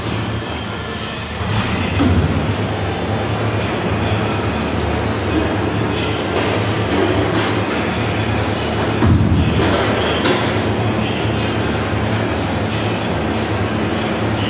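Steady low mechanical rumble with occasional knocks, from running commercial kitchen machinery.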